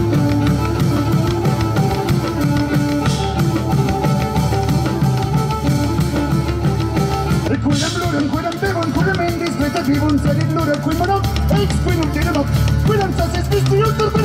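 Live folk-rock band playing: a drum kit and large drums keep a steady beat under plucked strings and held tones. About eight seconds in, a wavering melody line comes in over the band.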